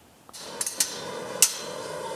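Construction-site din with sharp metallic clanks of hammering on steel, about three strikes over a steady background, starting about a third of a second in.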